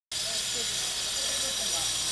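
Handheld angle grinder cutting, a steady high-pitched hiss of the disc biting through the material.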